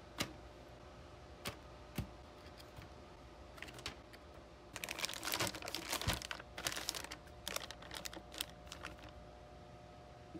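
Zip-top plastic bag being handled: a few single soft clicks as lemon slices drop in during the first two seconds, then about four seconds of dense crinkling and clicking as the bag is pressed and closed, over a faint steady hum.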